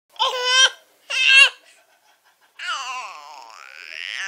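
Baby vocalizing: two short, high-pitched squealing calls about a second apart, then a longer call starting about two and a half seconds in that falls in pitch and trails on.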